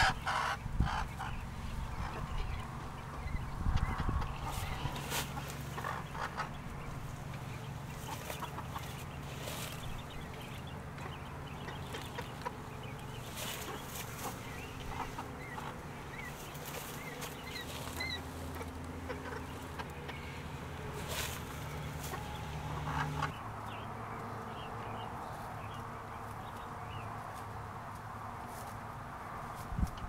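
Broody hen clucking, with coturnix quail chicks giving a few short high peeps around the middle, over scattered clicks and rustles in the bedding.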